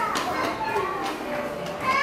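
Young children's voices calling out as they play, with a high rising call near the end, over background music.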